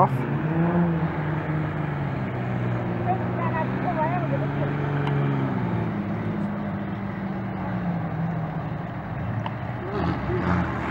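Engines of speedway cars towing caravans running under power around the dirt track at the start of the race, the engine note dropping about halfway through, with spectators' voices over it.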